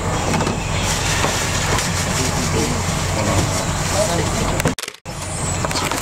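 Steady engine hum with indistinct voices talking over it; the sound drops out for a moment just before five seconds in.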